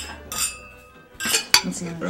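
Cutlery clinking against china plates, a few sharp clinks with the sharpest about one and a half seconds in.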